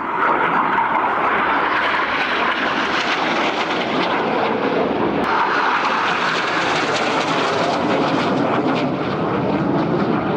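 Red Arrows BAE Hawk jet passing low overhead, its Adour turbofan making loud, rushing jet noise. The noise comes in suddenly at the start, holds throughout and swells again about five seconds in.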